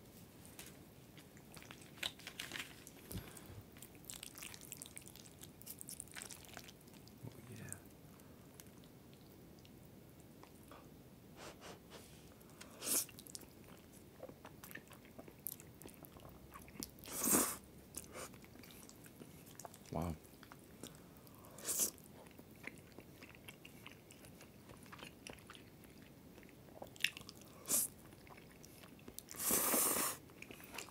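Close-miked eating of carbonara pasta with chopsticks: quiet chewing, broken by a handful of short, louder mouth sounds as noodles are slurped and bitten.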